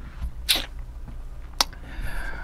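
A man's short, sharp breath noise about half a second in, followed by a single click about a second later, over a steady low hum.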